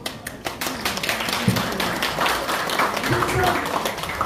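Audience applauding: many people clapping together, starting right as the award is handed over, with a few voices mixed in.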